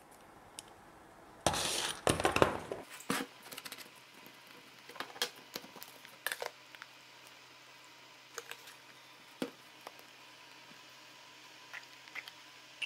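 Workbench handling noise of a glow-plug igniter, metal tools and a plastic fuel bottle: a loud rough burst about a second and a half in, lasting about a second, then scattered light clicks and clinks as things are picked up and set down.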